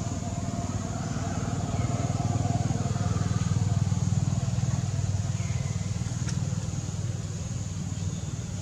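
Engine rumble of a passing motor vehicle. It swells to its loudest about halfway through, then fades.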